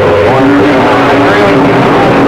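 CB radio receiving a distant station: a garbled voice with held tones under a steady bed of loud static.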